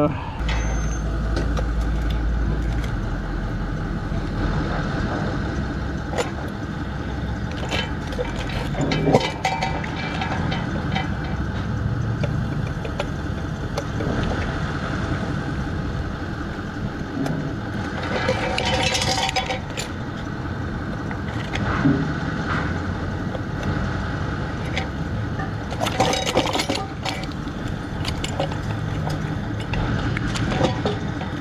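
A screwdriver working screws out of a ceiling fan's metal motor casing: scattered small metallic clicks and clinks, over steady scrap-yard background noise.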